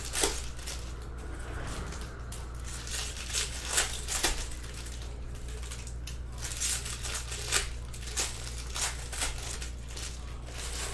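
Foil trading-card pack wrappers being torn open and crinkled while baseball cards are handled: an irregular run of short crinkles and snaps over a steady low hum.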